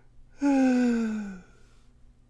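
A person's breathy, sigh-like vocal sound, about a second long, sliding down in pitch.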